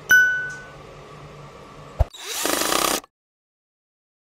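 Subscribe-button animation sound effects: a bright bell ding that rings and fades over about half a second, then about two seconds in a click followed by a second of loud noisy whirring that cuts off suddenly.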